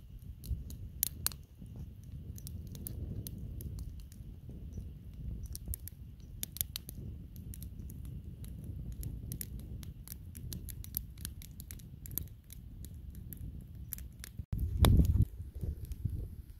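Wood campfire of split logs burning, crackling with irregular sharp pops over a steady low rumble. A loud low thump comes near the end.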